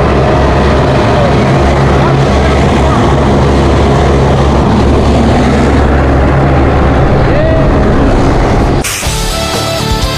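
Loud, steady roar of a propeller aircraft's engine and prop wash, with rock music underneath. A little before the end it cuts suddenly to the rock music alone.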